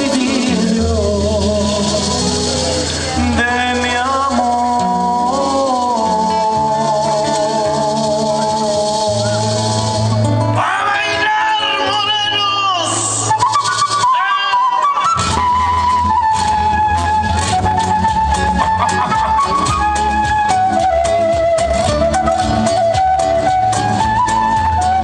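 Live folk band playing an instrumental passage: a flute melody with vibrato over strummed acoustic guitars, bass guitar and percussion, amplified through PA speakers. The bass drops out for a few seconds around the middle, then the full band comes back in.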